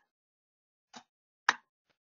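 Near silence broken by two short clicks: a faint one about a second in, then a sharper, louder one about a second and a half in.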